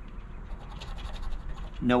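Coin scratcher scraping the coating off a scratch-off lottery ticket in rapid short strokes.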